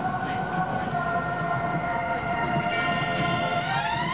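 Interior of a subway train in motion: a steady rumble with a steady whine over it. Near the end a rising electronic tone sweeps up as music begins.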